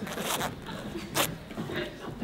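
Zipper on clothing being pulled: a short rasp just after the start and another, sharper one a little past a second in.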